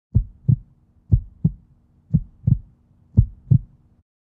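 Heartbeat sound: four double thumps (lub-dub), about one a second.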